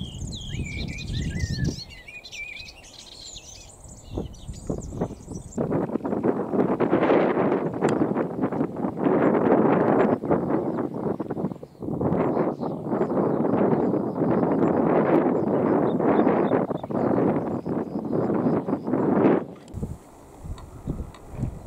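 A small yellowish warbler singing a fast, jumbled run of high chirps and warbles for about the first five seconds. Then loud wind buffets the microphone for the rest, with a short break about twelve seconds in.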